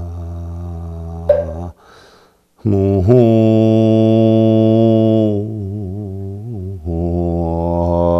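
A man's voice chanting a Buddhist verse in Sino-Korean in a slow Korean Buddhist chant, with long held notes and a short pause for breath about two seconds in.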